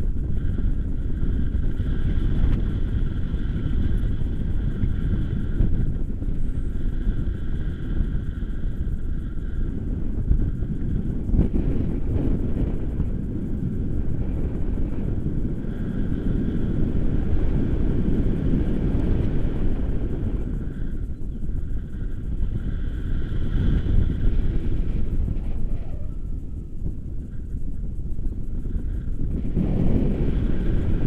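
Wind buffeting the microphone of a camera carried on a tandem paraglider in flight: a loud, dense low rush that swells and eases, with a faint high steady tone coming and going above it.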